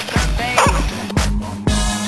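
Electronic dance-pop music with a steady kick drum about two beats a second; about a second in, the track moves to a held synth note.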